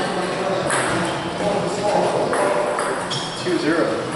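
Table tennis balls clicking off tables and paddles at several tables, irregular sharp taps over a steady hum of voices in a large hall.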